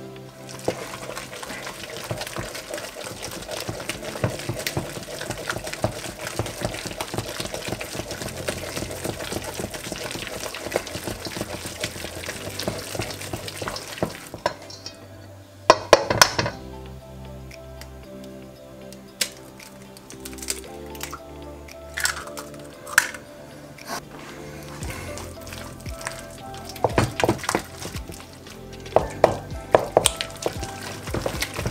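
Background music over a wooden spoon beating thick choux pastry dough in a stainless steel bowl, scraping against the metal. A few sharper knocks come in the second half, the loudest about sixteen seconds in.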